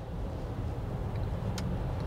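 Cabin sound of a Mercedes EQC 400 electric SUV driving at low speed: a steady low rumble of tyres and road, with the electric motor barely audible.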